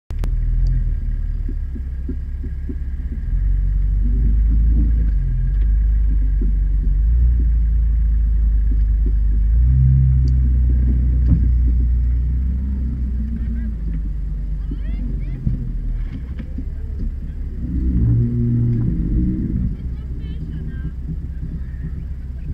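Off-road 4x4's engine running with a deep low rumble heard from inside the cab, rising in level over the first several seconds and again briefly near the end as it is revved and eased off.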